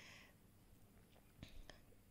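Near silence: room tone, with a few faint ticks about one and a half seconds in.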